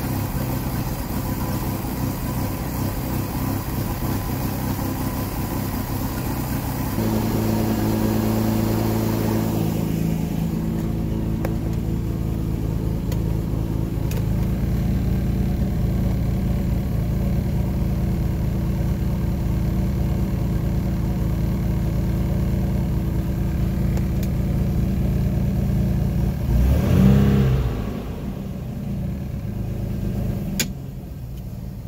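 Volvo Penta 4.3GL V6 boat engine running steadily at low speed on a test run after its alarm temperature sensor was replaced. Its pitch steps up slightly about seven seconds in, and near the end it briefly revs higher before settling back.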